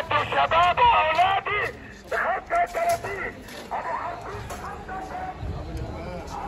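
A loud voice close by, talking and laughing, for the first second and a half, then quieter scattered voices of people in a busy street market.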